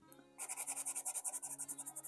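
Pastel pencil hatching on paper: quick, even back-and-forth strokes, about nine a second, starting about half a second in. The pencil is scratching the paper, typical of the hard Kalour pastel pencils.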